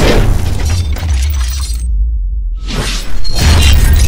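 Cinematic trailer-style sound design over heavy, steady bass: a hit with a shattering crash at the start, the high end falling away in the middle, then a second loud hit a little after three seconds.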